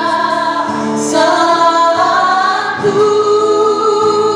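Church worship band performing a gospel song: several women sing together into microphones over the band's accompaniment, holding long notes.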